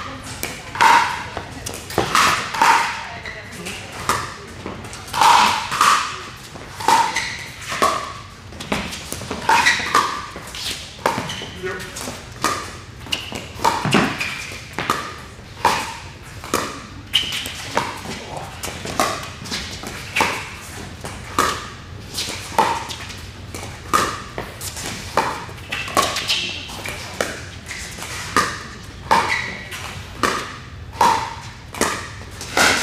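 Pickleball paddles striking a plastic ball in a long rally, a sharp pock roughly once a second.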